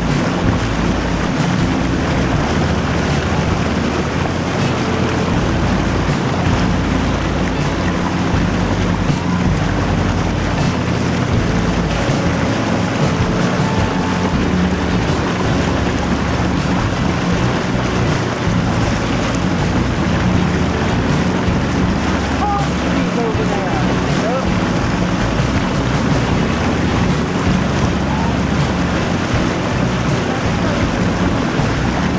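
Motorboat under way at a steady speed: the engine's drone under water rushing past the hull, with wind buffeting the microphone.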